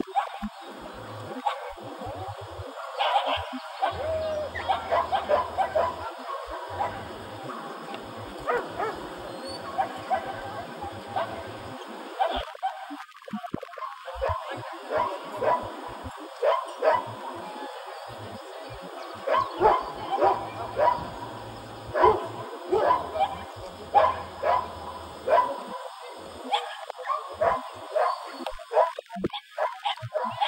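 Belgian Tervuren shepherd dog barking repeatedly in runs of short, sharp barks, about one to two a second.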